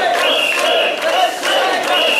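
A crowd of mikoshi bearers shouting a rhythmic carrying chant of "wasshoi" together, repeated rapidly, two to three calls a second.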